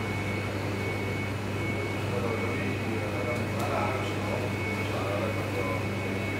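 Steady low hum of kitchen machinery, with a thin high whine that cuts in and out every second or so. Faint voices talk in the background partway through.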